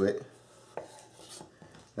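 A chef's knife cutting through a raw potato and striking the wooden cutting board with one sharp click a little under a second in, followed by faint scraping.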